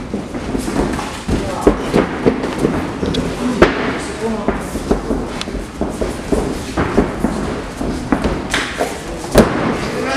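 MMA gloved strikes landing during a cage fight: a rapid, irregular series of sharp smacks and thuds, the loudest about three and a half seconds in and near the end. Men shout from ringside over the hits.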